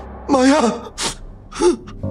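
A dramatized voice shouts the name "Maya!" in alarm, then comes a sharp gasp and a short pained cry.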